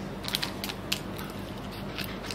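Scattered light clicks and taps as a card of metal hoop earrings is handled, over a steady low hum.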